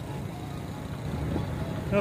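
Street ambience: a steady low rumble of traffic, with faint voices.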